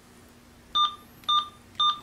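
Uniden SDS100 scanner's key beeps: three short, identical beeps about half a second apart as its setup menu is stepped through.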